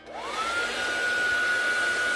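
Handheld hair dryer switched on and blowing: its motor whine rises as it spins up over about half a second, then holds steady over the rush of air.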